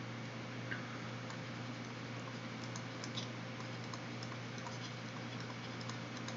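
Faint, scattered light clicks and taps of a stylus on a tablet screen during handwriting, over a steady low electrical hum and hiss.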